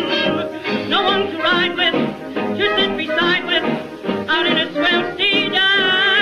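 Vintage jazz-band record playing a lively tune whose melody line carries a fast, wide vibrato. It has the thin, narrow sound of an old disc.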